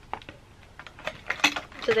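Small items being handled and put into a mug: a run of light, irregular clicks and taps, the loudest about one and a half seconds in.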